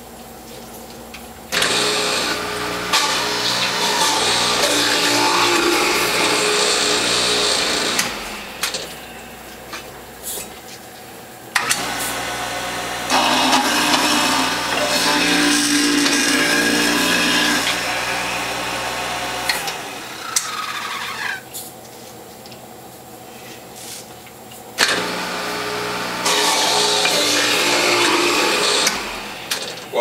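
Electric cutters of Norwalk-type juicers (Norwalk 290 and WHF Model 800) grating whole carrots fed down the feed tube. There are three loud grinding stretches of several seconds each over the steady hum of the juicer motor, with the motor running more quietly in the gaps.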